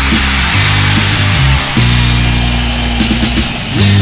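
Live rock band playing loud: distorted electric guitar in a dense, noisy wash over bass notes held and changed every second or so, with drums and cymbals. No singing in this stretch.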